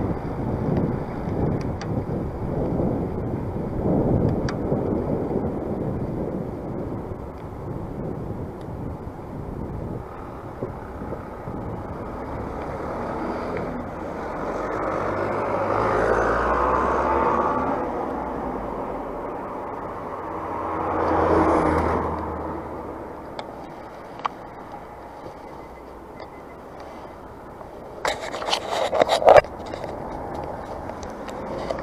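Wind buffeting a bicycle-mounted microphone while riding, with road traffic going by: two motor vehicles pass, each rising and fading over a few seconds, the second about twenty seconds in. A short burst of rattling clicks comes near the end.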